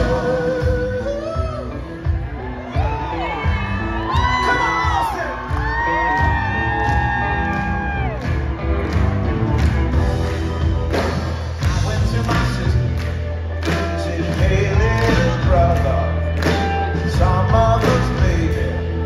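Live soul band playing: a male singer holds long, gliding notes over electric guitars, bass and drums, with the drums and bass settling into a steady beat in the second half.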